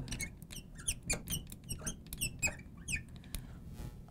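Felt-tip marker writing on a glass lightboard: a quick series of short, high squeaks and taps as each letter is stroked, thinning out near the end.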